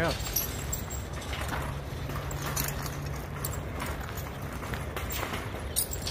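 Metal mesh-bed garden cart rattling and clattering as it is pulled across a dirt and gravel yard, its wheels crunching over the ground.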